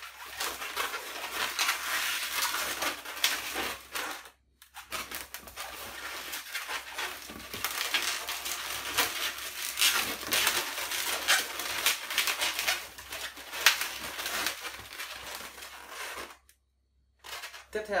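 Inflated latex modelling balloons being twisted and locked by hand: the rubber squeaks, rubs and crackles against itself. It breaks off briefly about four seconds in and stops about a second and a half before the end.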